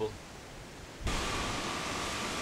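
A low, steady hiss that jumps abruptly to a louder, even hiss about a second in, with a faint thin tone running through it.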